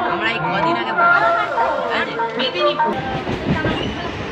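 Several people talking at once inside a moving passenger train carriage, over the rumble of the train on the rails. The low rumble gets heavier about three seconds in.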